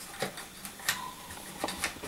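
A few light metallic clicks and taps from a piston and wrist pin being handled and lined up on a connecting rod's small end.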